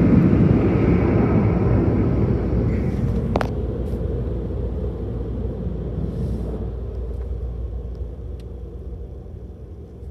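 Car wash tunnel dryer blowers rushing air over the vehicle, heard from inside the cab. The noise fades steadily as the truck pulls clear of the dryers, with a single sharp click about three seconds in.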